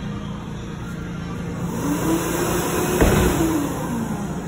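A small electric motor whirs up to speed, holds for about a second and a half, then winds back down, with one sharp click midway.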